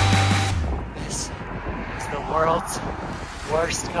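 Heavy rock music cutting off about half a second in, then wind rushing over the microphone of a cyclist riding into a headwind, with the rider's voice breaking in briefly twice.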